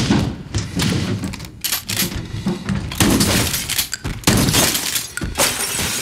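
Fight-scene sound effects from an action film soundtrack: a run of crashes, thuds and breaking sounds, with sudden loud hits about three, four and five and a half seconds in.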